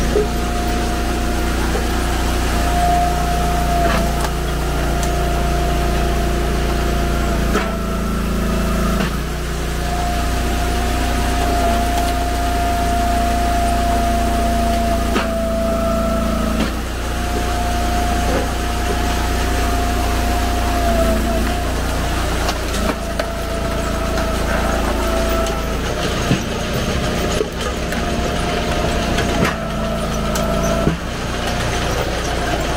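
Engine of an Eastonmade 22-28 hydraulic wood splitter running steadily, with a steady hydraulic whine that drops out and returns several times as the ram cycles through logs. Occasional short knocks and cracks as the wood splits against the box wedge.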